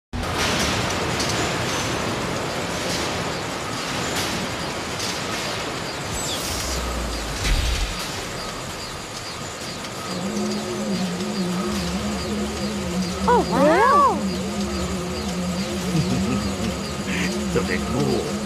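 Animated-soundtrack machinery ambience: a noisy rumble for the first ten seconds, then a steady, wavering low hum, with a brief sliding pitched sound about thirteen seconds in.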